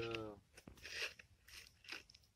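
A small spoon scooping powdered fertiliser out of a crinkly foil packet: two brief, faint scraping crunches, about a second in and just before the end. A short spoken word is heard at the very start.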